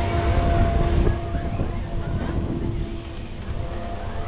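On-board rumble of a spinning balloon-gondola amusement ride, with a steady hum running underneath. The rumble is loudest in the first second, then eases a little.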